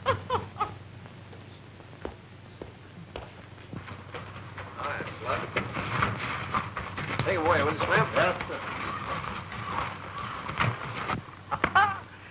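Indistinct voices talking over the steady low hum of an old optical film soundtrack, with a few faint knocks in the first few seconds.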